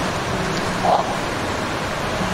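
A steady, even hiss fills a pause in speech, with one brief faint sound about a second in.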